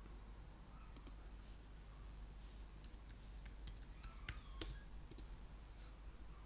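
Faint computer keyboard typing and clicking. Two clicks come about a second in, then a quick run of keystrokes in the second half, with one louder click near the end.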